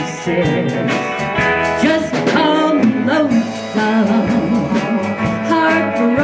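Live country band playing: a woman singing over electric bass, guitar and drums, with a steady beat.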